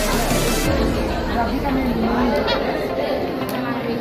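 Background music mixed with the chatter of a crowd of people talking in a large hall.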